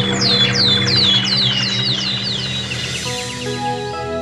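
Birds chirping in a quick series of downward-sliding chirps, about three a second, over background music. The chirps die away about two and a half seconds in, and soft keyboard notes continue.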